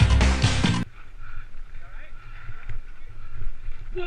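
Background music that cuts off abruptly about a second in, followed by the low rumble of a mountain bike rolling down a dirt trail, with wind on the microphone.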